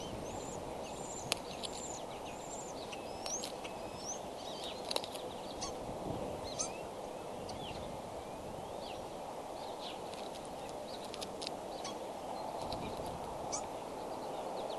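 Outdoor birdsong ambience: many short, high chirps and whistles from birds, over a steady rushing background, with a few sharp clicks.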